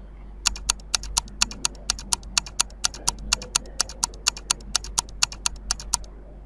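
Quiz countdown timer sound effect: fast, even clock-like ticking, about four to five ticks a second, starting about half a second in and stopping just before the end.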